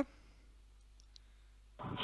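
A near-quiet pause on a phone line, with two faint short clicks a little after a second in. A man's voice starts just before the end.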